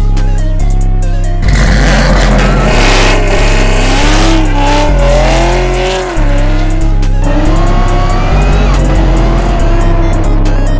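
Chevrolet Camaro ZL1 doing a burnout: tyres squealing with a wavering, gliding pitch and the engine revving, thickest from about a second and a half in until about six seconds, over electronic music with a heavy bass line.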